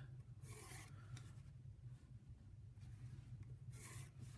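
Pencil lead scratching faintly across paper as lines are drawn along a ruler edge: two short strokes, one about half a second in and one near the end, over a low steady hum.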